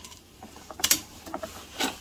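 Coarse granular potting mix poured from a plastic scoop around the edge of a planted pot: a few short rattling scrapes of grit, the loudest just before a second in and another near the end.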